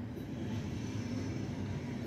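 Ballpoint pen writing on paper over a steady background hum.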